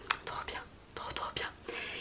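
Soft breathy, whispered mouth sounds from a woman, with no voiced words: a few short hissy puffs and small clicks about half a second apart.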